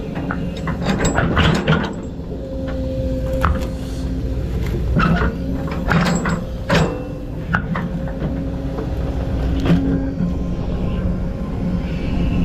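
Excavator engine running under load with a hydraulic whine that rises and drops away, while a rake attachment drags through brush and dirt, giving scattered snaps and crackles of breaking sticks and roots.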